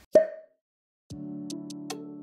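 A short pop sound effect with a brief ringing tone, then a moment of total silence. About a second in, soft background music starts: a steady chord with a few light high ticks.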